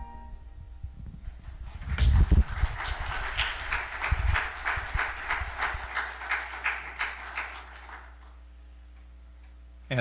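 Light, sparse applause from a small group of people, about four claps a second. It starts about two seconds in, with a couple of low thumps near its start, and dies away at around eight seconds.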